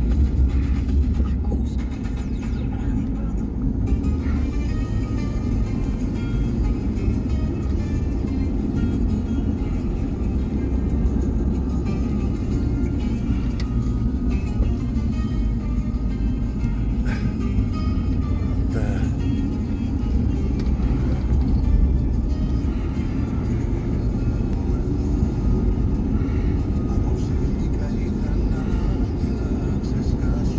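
Greek music with singing playing inside a moving car, over the steady low rumble of road and engine noise in the cabin.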